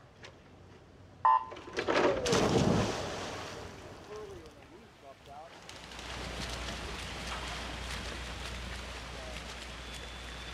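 A short electronic start beep about a second in, then a loud burst of crowd cheering and the splashes of swimmers diving in. After that comes steady splashing from the freestyle swimmers under continuous crowd noise.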